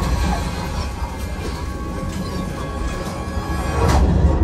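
Flight-simulator ride soundtrack in the Millennium Falcon cockpit: a deep steady rumble and crashing effects over music as the ship drops out of hyperspace, with a sharp crash near the end.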